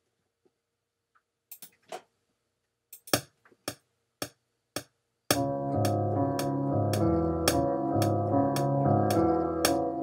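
Software piano (Keyscape plug-in in the Akai MPC software) being played live over the sequencer's metronome at 110 BPM. A few metronome clicks come first, then piano chords with low bass notes start about five seconds in, under steady clicks about every half second.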